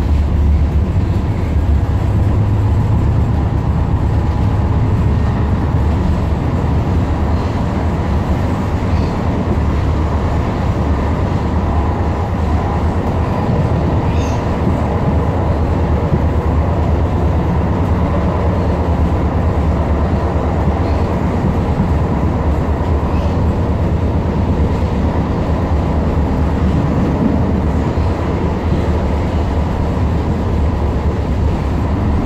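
Tyne and Wear Metro Class 994 Metrocar running between stations, heard from inside the passenger saloon: a loud, steady low rumble of wheels on rail and running gear, with a faint click about halfway through.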